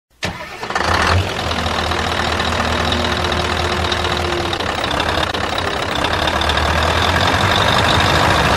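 An engine starting with a sudden burst, then running steadily with a low hum that slowly grows louder.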